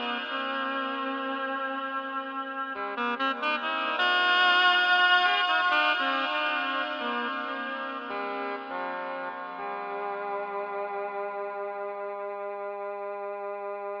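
Electronic music played on a Korg M1 workstation synthesizer: a slow layered melody over held chords, without drums, with a quick run of notes about three seconds in and swelling louder just after.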